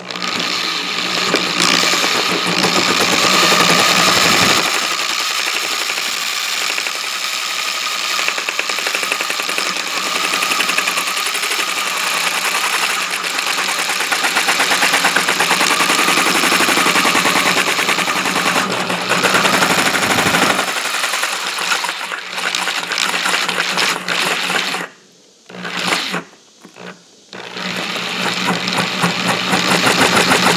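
Electric drill turning an adjustable circle cutter slowly through the plastic top of an IBC tote, the spinning blade chattering rapidly against the plastic as it scores the circle. The drill stops twice briefly near the end, then runs again.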